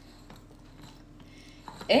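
Faint, soft squishing and scraping of a spatula spreading and levelling a thick cream-cheese filling.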